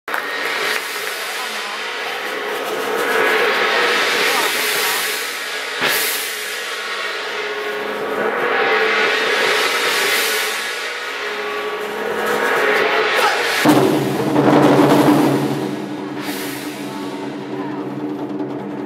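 Drum performance on large Chinese barrel drums, over steady sustained tones. The sound swells and fades every few seconds, with single sharp hits near the start, about six seconds in and near the end. About two-thirds through, a deeper, fuller section comes in.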